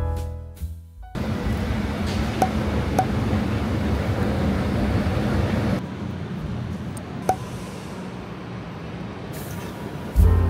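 Soft piano music ends about a second in. Then comes the steady rush of city noise on an elevated train platform, with a few short clinks, dropping a step in level about halfway through.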